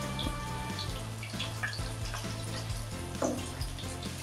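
Rohu fish steaks frying in mustard oil, a steady sizzle with a few small pops, over soft background music.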